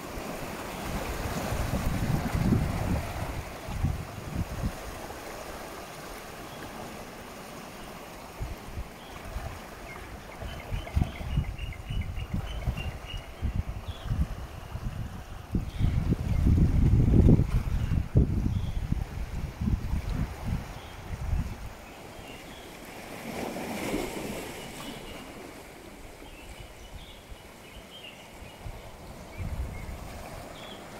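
Wind buffeting a phone's microphone in uneven gusts, strongest about halfway through, over a steady wash of sea surf.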